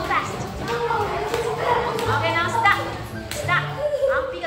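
A group of children calling out at play, their high voices overlapping, with music playing underneath.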